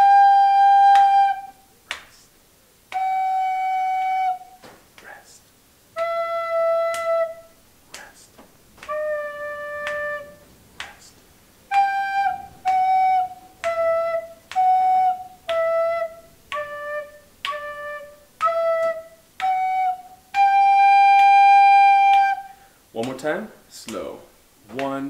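A recorder playing a slow melody. Four held notes step down, G, F sharp, E, D, each followed by a rest. Then shorter notes wind back up through E and F sharp to a long held G.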